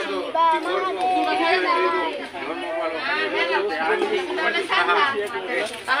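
Speech: fairly high-pitched voices talking in a steady stream of chatter.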